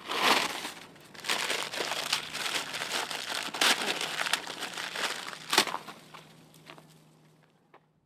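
Rustling and crinkling as handfuls of leaves are pulled off a small tree and crushed into a bag, with a couple of sharp snaps among them. It fades away in the last couple of seconds.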